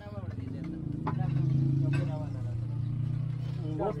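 A motor vehicle's engine running close by, a low steady hum that grows louder about a second in, with a couple of short clicks and brief voices over it.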